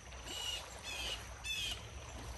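A bird calling three times in quick succession, short calls about 0.6 s apart, over a low steady background noise.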